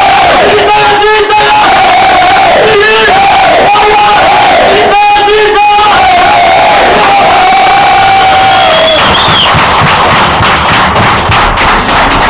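A group of men chanting together in unison at full voice, in short held phrases. Near the end the chant breaks up into mixed shouting and cheering.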